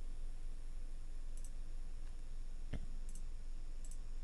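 A few soft computer mouse clicks, the clearest a little under three seconds in, over a low steady background hum.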